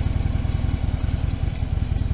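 Harley-Davidson touring motorcycle's V-twin engine idling steadily with an even low pulse, left running to settle after starting.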